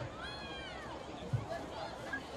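A single high-pitched drawn-out shout from a spectator, rising a little and then falling in pitch, over crowd chatter. A short low thump follows about a second later.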